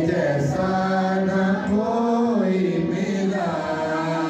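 A woman singing a Hindi/Urdu Christian worship song (Masihi geet) in long held notes that slide in pitch, over the steady sustained tones of a harmonium.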